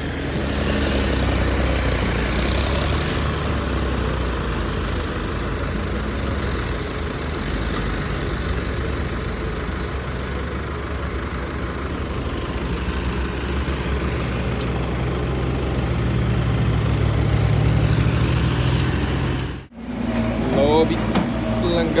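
Tractor diesel engine running steadily while pulling a karah (soil-levelling scraper) across a field, its low rumble growing louder for a few seconds near the end. It cuts off suddenly, and voices follow in the last two seconds.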